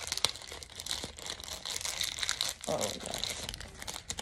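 Foil wrapper of a Pokémon Sun & Moon Unbroken Bonds booster pack crinkling steadily as fingers pull the snipped pack open.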